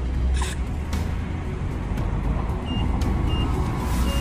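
Petrol-station automatic tyre inflator pumping air into a car tyre through a chuck held on the valve, with a steady low rush underneath. Near the end it gives three short high beeps about half a second apart, the signal that the set pressure has been reached.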